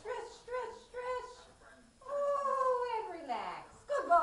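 A dog vocalising: three short pitched whines, then about two seconds in one long whine that slides down in pitch.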